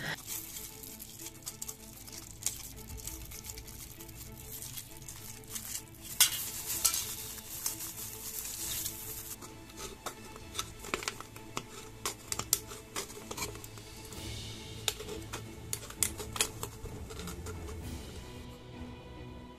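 Thin aluminium drink can crinkling and ticking as it is handled and cut into with a craft knife: scattered sharp clicks, a few louder ones, over faint background music.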